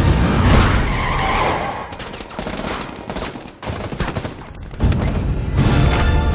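Bursts of rapid gunfire mixed with music. The sound drops and turns choppy in the middle, with sharp cracks, and comes back loud near the end.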